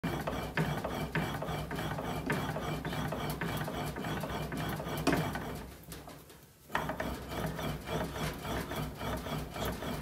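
Hand-operated bat-rolling machine pressing and turning a Victus NOX hybrid baseball bat between its rollers during a heat roll to break the bat in: a continuous rubbing, grinding sound with a regular tick a little under twice a second. It fades to a lull a little past halfway, then starts again abruptly.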